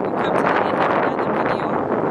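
Wind buffeting the camera's microphone, a loud, steady rushing noise.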